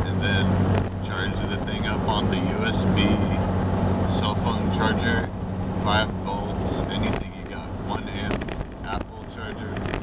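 Steady engine and road drone inside the cabin of a 1998 Jeep Cherokee on the move, with a man's voice sounding in bits over it.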